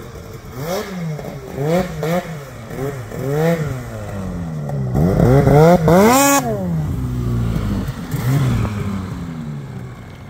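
Arctic Cat snowmobile engine revving in repeated short throttle blips as the sled works through deep drifts. About six seconds in it climbs to a longer, louder rev with a brief hiss as it passes close, then drops back to a steadier, lower drone as it pulls away.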